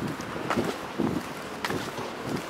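Footsteps on pavement, a dull thump about every half second, with wind buffeting the microphone.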